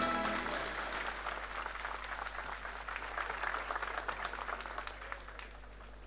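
The last of a choir's held chord dies away and a large crowd applauds, the applause fading away gradually.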